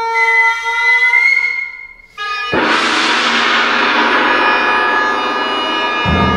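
Oboe and violin holding sustained notes, the violin's high note rising slightly. About two and a half seconds in, a tam-tam is struck once and its shimmering wash rings on and slowly dies away.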